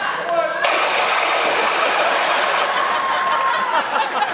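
Stage laser-gun sound effect played through theatre speakers: a sudden loud burst of noise about half a second in, with a steady whine held for a couple of seconds before it drops away near the end.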